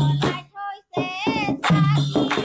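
A group of women singing a devotional hymn to Vishwakarma in unison, with clapping and jingling percussion keeping the beat. The singing breaks off briefly about halfway and then comes back in.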